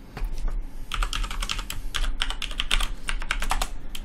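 Computer keyboard being typed on: a quick run of key clicks, starting about a second in and going on for nearly three seconds, as a password is entered at an SSH login prompt.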